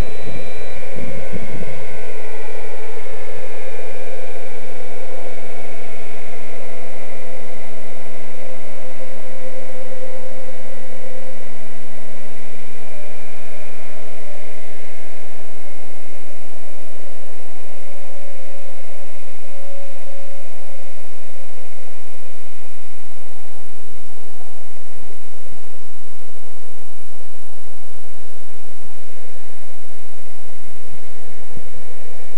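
Radio-controlled scale MD 369 model helicopter flying at a distance: a steady whine from its motor and rotors that drifts slightly in pitch and fades about halfway through, over a loud steady hiss.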